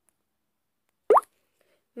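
Near silence broken about a second in by a single short pop that rises quickly in pitch.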